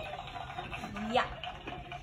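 A short spoken 'yeah' about a second in, otherwise faint room sound between loud bursts of talk.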